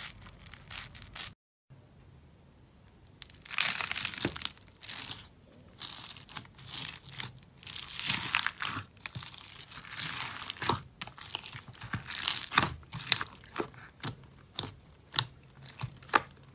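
Scissors snipping through a foam sponge, cut off by a brief dead gap. Then a hand squeezing and pressing slime packed with foam beads, giving crunchy crackling in irregular bursts full of sharp little pops.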